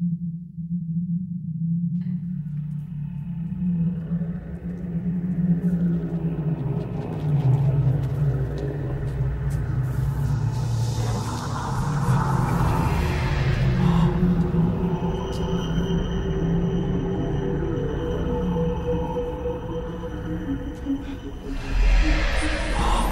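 Background music: a low sustained drone that thickens as more layers join a couple of seconds in, and swells in the middle.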